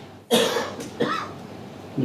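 A man coughing twice: a longer cough about a third of a second in and a shorter one about a second in.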